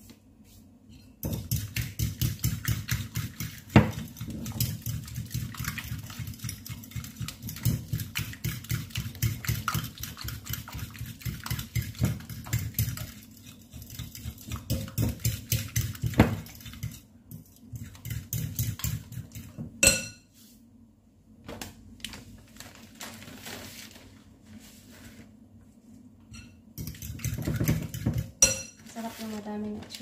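A metal fork whisking beaten eggs and grated parmesan in a glass bowl for a carbonara sauce, its tines clicking rapidly against the glass in a steady rhythm for most of the first twenty seconds. A sharp clink comes about twenty seconds in, and a shorter spell of whisking follows near the end.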